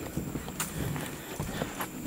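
Footsteps on a wooden boardwalk: shoes knocking on the planks in an uneven walking rhythm, with a thin steady high tone behind.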